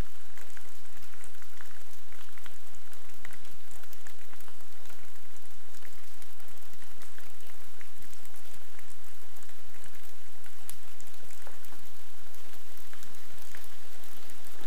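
Steady rain falling, with many small drop ticks scattered through it.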